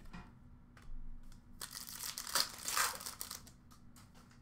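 Trading cards and their plastic packaging being handled: a few light clicks, then about a second and a half of crinkling and rustling in the middle, and a few more clicks near the end.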